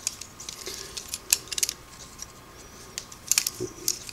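Light, scattered metallic clicks and rattles of a vintage Singer buttonholer's metal parts as it is turned over in the hands. The mechanism is freshly cleaned and dried, not yet oiled.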